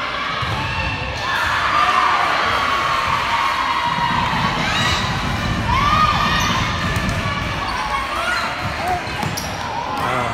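Volleyball rally in a gymnasium: the ball is struck back and forth with sharp hits, and players shout calls over the gym's crowd noise.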